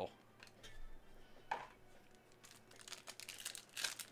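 Faint crinkling and crackling of a foil trading-card pack wrapper being handled and torn, as a run of short crackles in the second half.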